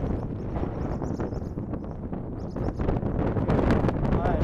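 Wind buffeting the microphone: a loud, uneven rumble that rises and falls in gusts.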